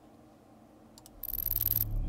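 Near silence for about a second, then an intro sound effect starts: a rapid, fine ticking high up over a low hum.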